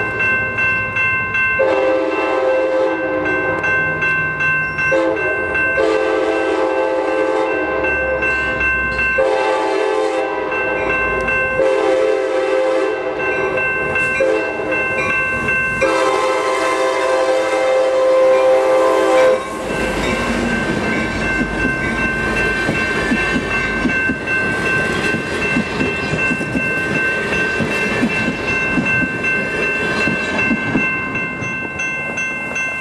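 An Amtrak California passenger train's horn sounds a long series of blasts as the train comes up the street-running track. About 19 seconds in the horn stops and the train rumbles past close by.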